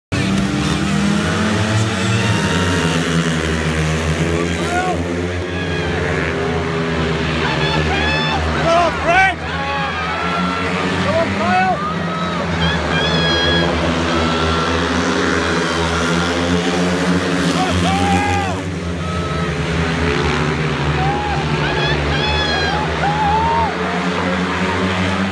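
A pack of speedway bikes racing round the track, their single-cylinder 500 cc methanol-burning engines running hard at high revs. Voices call out over the engines.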